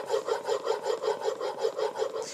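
Steel plane iron in a honing guide being rubbed back and forth on a wet 8000-grit Shapton ceramic waterstone, a quick, even, repeating scrape. It is the fine-grit honing of a 30-degree micro bevel under light pressure.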